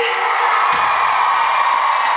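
Large concert audience cheering steadily, answering the singer's shout to the crowd.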